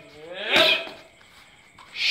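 A Muay Thai strike hitting a trainer's pad with a short, sharp 'shut'-like shout about half a second in. Another pad strike and shout come right at the end.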